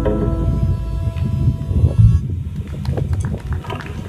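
A live band's closing electric-guitar chord ringing out and fading over the first second or so, leaving a low rumble. A few scattered sharp clicks follow in the second half.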